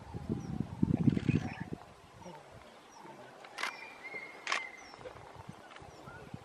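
Two sharp whistle calls from dholes (Indian wild dogs) about a second apart, a high steady whistle held between them. This is the contact whistle the pack uses to communicate. Faint bird chirps are heard around the calls.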